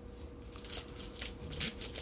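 Faint scuffing and light clicks of glossy chrome trading cards being slid and shuffled between fingers.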